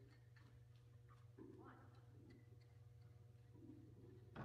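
Near silence: faint, scattered hoofbeats of a horse moving on soft arena dirt, heard as light ticks over a steady low hum.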